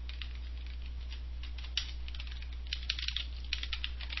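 Computer keyboard being typed on slowly and unevenly, keys hunted one at a time: a few keystrokes about two seconds in, then a quicker run of clicks near the end.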